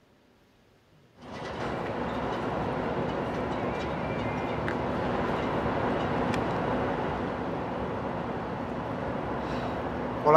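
Steady outdoor city noise, a continuous rumble with hiss, cutting in suddenly about a second in.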